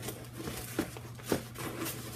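Perfumes being packed into a fabric cosmetic bag that already holds packs of press-on nails: light rustling and handling noise, with about four small knocks as the items are pushed in.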